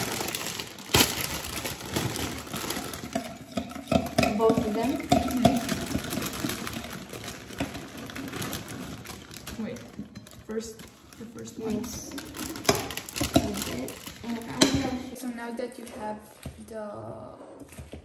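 A plastic bag of salad leaves being opened and handled, with crinkling, clicks and light knocks on the counter.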